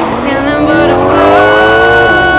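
A car engine revving up, its pitch rising steadily for about two seconds, while the music's drum beat drops out.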